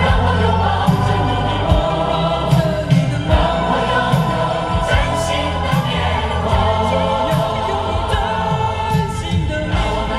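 A Mandarin pop song played through a car's ZR Prestige speaker system, heard inside the cabin: voices singing together over a band, with a strong bass beat.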